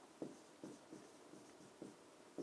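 Marker pen writing on a board: about five faint, short strokes as a figure is written.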